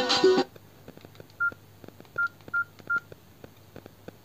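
Music from small computer speakers cuts off about half a second in. Then a keypad mobile phone gives four short, single-pitch key beeps, with faint button clicks in between, as its keys are pressed.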